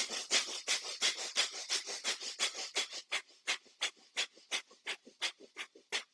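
Rapid, forceful breaths through the nose in bhastrika (bellows-breath) pranayama, about five quick strokes a second. The strokes become sharper and more separate after about three seconds.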